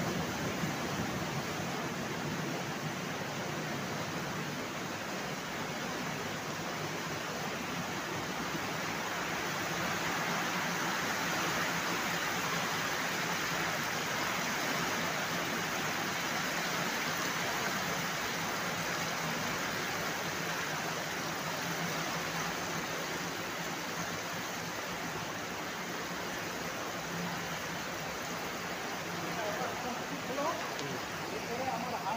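Water rushing down an open concrete inlet channel and pouring into the beds of a rapid sand filter, a steady splashing rush as the filter is fed with water for filtration. It swells a little partway through as the beds fill and churn.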